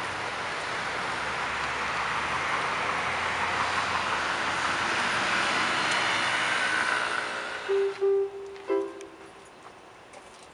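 Road traffic noise from a passing vehicle, a rushing sound that slowly swells and then fades out about seven seconds in. A few single notes on an electronic keyboard follow near the end.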